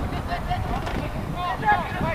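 Voices calling out across a football pitch, too indistinct to make out, over a low rumble of wind on the microphone.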